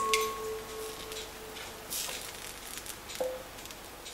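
Faint scraping and light clinks of a steel ladle against a nonstick frying pan as thin batter is spread around it. A soft metallic ringing tone fades out over the first couple of seconds, and a short clink with a brief ring comes a little after three seconds.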